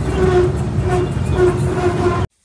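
Combine harvester's engine and machinery running steadily, heard from the operator's seat, with a tone on top that comes and goes.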